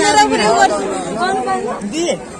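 Speech only: people talking in a crowd, with voices going on through most of the stretch.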